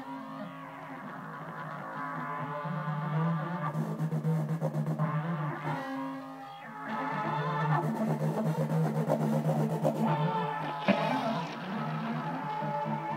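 Camel Audio Alchemy software synthesizer sounding a sustained note triggered from a Percussa AudioCube's infrared sensor face. Its pitch and tone shift as hand motion modulates the synth's morph pad and oscillator fine tune, and the sound changes character about four seconds in and again around seven seconds.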